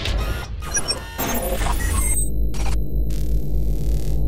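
Electronic intro sting for an animated logo: a flurry of glitchy, crackling digital effects over a deep bass drone. About halfway through it settles into a steady low pulse with a few faint high tones.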